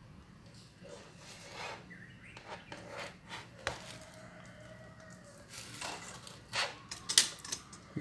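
Handling noise from a laptop being moved on a desk and its lid opened: a few faint clicks and knocks, the sharpest near the end.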